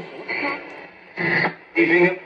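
A spoken-word radio broadcast playing through the loudspeaker of a 1941 General Electric L-632 tabletop tube radio. A voice comes in short phrases with brief pauses, and the sound is thin and narrow, typical of a broadcast heard through a radio speaker.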